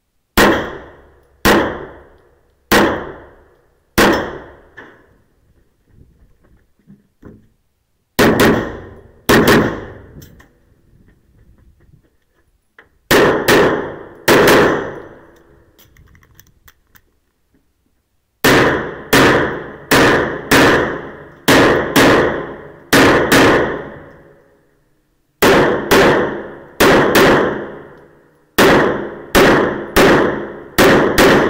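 Handgun shots echoing in an indoor shooting range during a practical-shooting stage, about thirty in all, each with a ringing tail off the walls. They come singly at first, then in quick pairs and fast strings, broken by a few short pauses.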